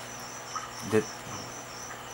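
High-pitched chirping that pulses evenly about four times a second and holds steady throughout, insect-like. A single spoken word falls about a second in.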